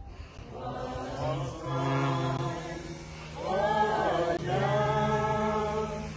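A group of voices singing slowly together without accompaniment, in long held notes with short breaks between phrases.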